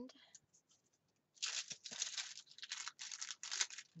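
A paper planner sticker being peeled off its backing sheet: a crackly tearing rustle in several short pulls lasting about two and a half seconds, starting about a second and a half in, after a few faint taps.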